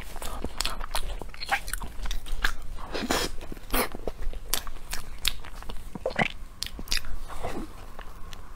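Close-miked chewing of a soft, cream-filled, cocoa-dusted mochi: a string of short, irregular wet mouth clicks.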